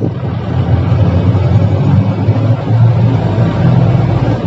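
Mahindra Bolero's diesel engine and road noise heard from inside the cabin while driving along a highway: a steady low drone.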